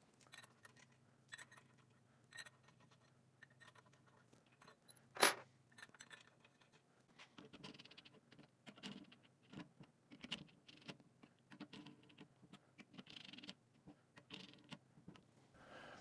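Faint metal clicks and scrapes of steel flange bolts being set into an aluminium overdrive piston retainer and run in by hand with a T-handle driver, with one sharper metallic clink about five seconds in.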